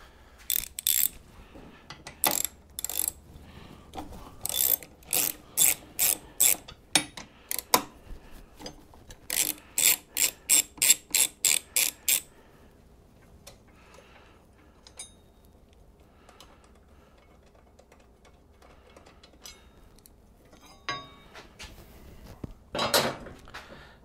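Socket ratchet clicking in repeated bursts, about three clicks a second, as bolts holding a brace are backed out. After about twelve seconds it stops, leaving a few light taps and clinks and a knock near the end.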